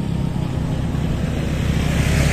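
Motorcycle engine noise from the road, a steady rumble that grows slightly louder toward the end as the bikes approach.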